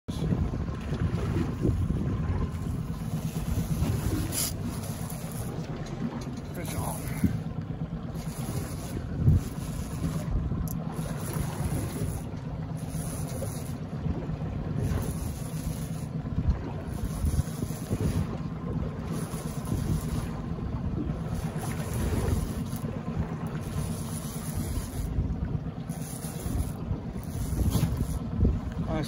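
Wind buffeting the microphone on an open boat on the water, a steady low rumble that rises and falls, with a few brief knocks, the loudest about nine seconds in.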